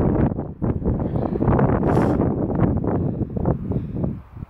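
Wind buffeting the phone's microphone: a loud, irregular low rumble that gusts and dips throughout.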